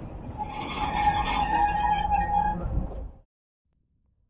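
Freight train of open wagons rolling past, its wheels squealing with high steady tones over the rumble of the wagons. The sound cuts off suddenly about three seconds in.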